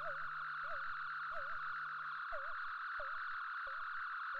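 A quiet electronic soundscape passage in a breakbeat track. A steady high synth tone sounds under short warbling chirps that repeat roughly every two-thirds of a second. A low hum drops out about halfway through, and faint clicks come in with the later chirps.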